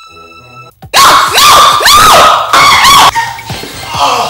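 A woman screaming: a run of loud, shrill cries that rise and fall in pitch, starting about a second in and breaking off about three seconds in.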